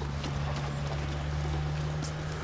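Footsteps of a child's bulky spacesuit-costume boots on a cobbled path, a few separate knocking steps over a steady low hum.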